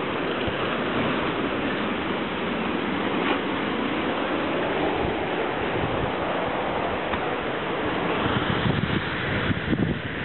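Rough ocean surf washing and breaking against a rocky shore in a steady rush, with wind on the microphone.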